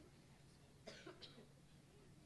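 Near-silent room tone with a steady low hum, broken about a second in by a person coughing twice in quick succession.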